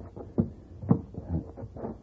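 A few short knocks and thumps, about four in two seconds, with faint, indistinct voices between them.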